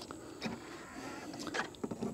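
Tesla charging handle being fitted into a Model Y's charge port: a few faint plastic clicks and knocks, the sharpest just before the end.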